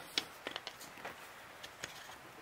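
Faint, scattered clicks and taps from the metal parts of a Veritas combination plane being handled as its fence is fitted onto the rails.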